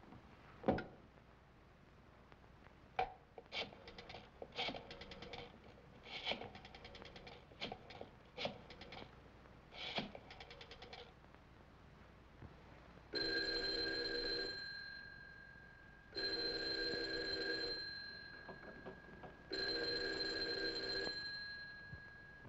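A candlestick telephone's rotary dial clicks through several numbers in quick trains of clicks. Then a telephone bell rings three times, each ring about a second and a half long.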